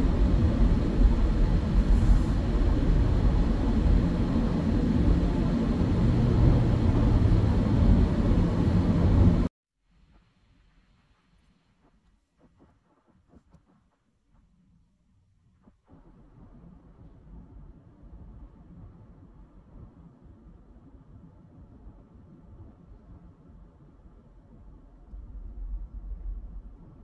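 Steady road and engine noise inside a moving minivan's cabin, which cuts out abruptly about nine seconds in. Several seconds of near silence follow, then the same noise returns much fainter.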